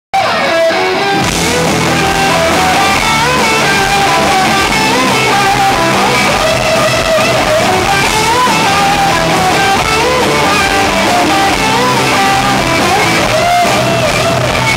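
A rock band playing live and loud: electric guitars with a gliding melodic lead line over bass.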